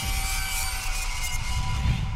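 Cinematic logo-intro music and sound design: a hissing rush of noise over a low pulsing rumble, with a few held tones.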